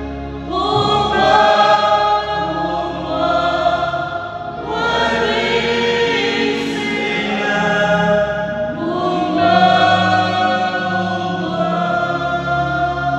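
A woman singing a slow gospel worship song into a microphone, holding long notes in phrases that change about every four seconds.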